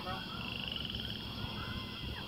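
Faint background of distant voices, with a short, rapid, high-pitched trill about half a second in.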